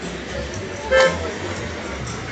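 A car horn gives one short toot about a second in, over background chatter and outdoor noise.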